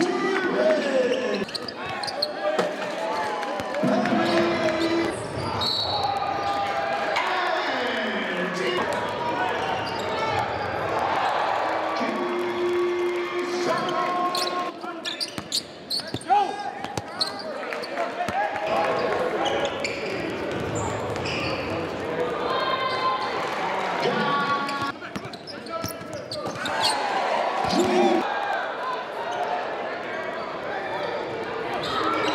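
Live basketball game sound in a large gym: a ball dribbling and bouncing on the hardwood, sneakers squeaking in short chirps, and players' and spectators' voices calling out, all echoing in the hall.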